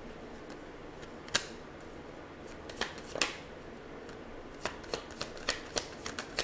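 Tarot cards being handled off to the side: a few short, sharp clicks and snaps at irregular intervals, coming quicker near the end, over a faint steady hiss.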